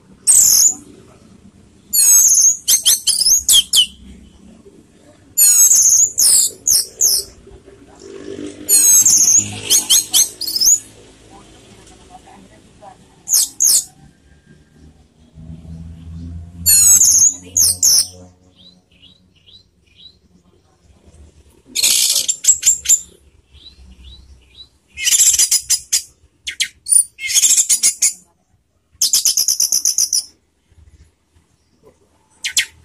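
Orange-headed thrush (anis merah) singing: about nine rapid bursts of high, varied, sweeping notes, each a second or two long, separated by short pauses. This is the 'teler' song that keepers prize in this bird.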